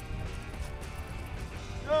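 Background music over a low rumble.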